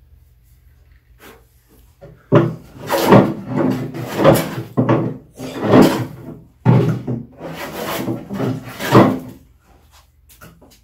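Veritas low angle jack plane, its blade unsharpened straight out of the box, taking shavings off a rough maple slab. About two seconds in, a run of quick push strokes starts, about one a second, each a rough rasping cut along the wood.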